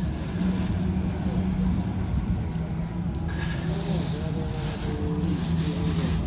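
Steady low mechanical hum, like a running engine, with faint voices of people talking in the background about halfway through.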